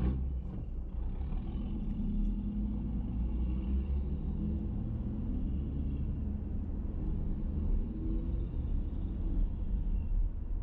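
Car engine and road noise heard from inside the cabin as the car pulls away from a stop and drives on slowly. The rumble grows louder about a second in, and a few faint clicks come near the start.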